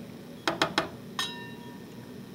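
Metal spoon clinking against a stainless steel saucepan: three quick light taps, then one sharper strike that rings for about half a second.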